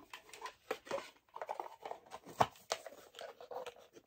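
A small white cardboard box being handled: a scatter of light clicks and taps with brief soft scraping as it is picked up and moved, with one sharper click about halfway through.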